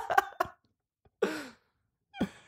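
Laughter trailing off in the first half second, then a short vocal sound falling in pitch about a second later.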